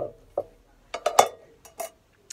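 Metal Kirby grips clicking and clinking as they are handled, a scatter of short clicks that bunch together in the second second.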